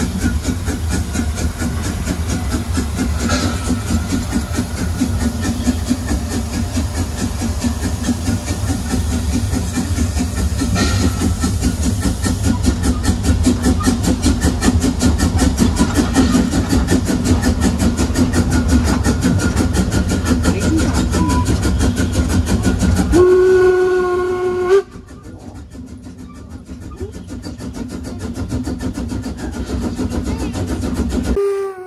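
Narrow-gauge steam locomotive 99 4011-5 running close by, heard from the coach's open end platform, with a fast, even beat. About 23 s in, its steam whistle sounds once for about a second and a half. Right after that the running sound suddenly drops to a much quieter level.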